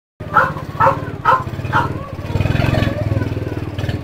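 Small single-cylinder engine of an old Cub-style step-through motorcycle running at low revs. Over it, a dog barks four times, about half a second apart, in the first two seconds.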